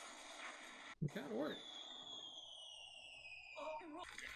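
Faint anime episode soundtrack: a brief voice, then a high whistling tone that falls slowly in pitch for about two seconds, with another brief voice near the end.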